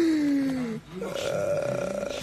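A person's drawn-out, burp-like vocal sound that slides steadily down in pitch for most of a second. It breaks off, then a higher, steadier held vocal tone follows.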